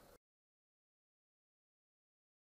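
Near silence: the last trace of a voice fades out right at the start, then the sound cuts to complete digital silence.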